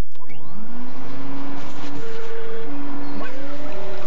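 An electric motor running with a steady rushing whir, like a vacuum cleaner. Its whine rises in pitch and levels off near the start, and rises again about three seconds in.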